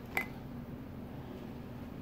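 A brief clink as a glass is picked up off a stone countertop, then a steady low hum of the room.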